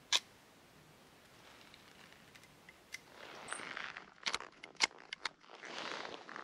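A single sharp click, then from about halfway close rustling of cloth against the microphone with several sharp clicks and knocks.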